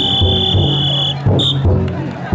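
Taiko drum inside a chousa drum float beaten in a slow steady beat, each stroke ringing low. Over it a high shrill tone is held for about a second, then sounds again briefly.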